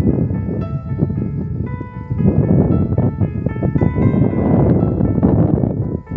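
Background music with keyboard-like notes played one after another, over a heavy low rumble of wind on the microphone.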